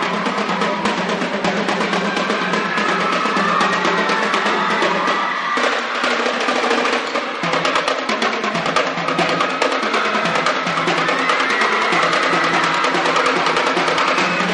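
A marching drumline playing without a break: a player on a set of marching tenor drums and others on marching snare drums, sticks striking in quick, dense patterns.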